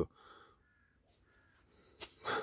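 Two faint, brief bird calls, the second coming a little under a second after the first.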